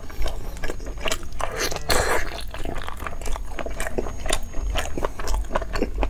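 Close-miked mouth sounds of a man biting into and chewing a chunk of stewed beef with tendon and skin: a steady run of irregular smacks and clicks.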